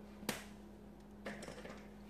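A single sharp click, then a short run of lighter clicks and rustling a second later, over a steady low hum.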